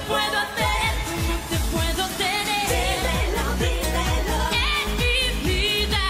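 Dance-pop music from a live stage performance: a woman sings the lead in Spanish over a backing track with a steady, regular kick-drum beat.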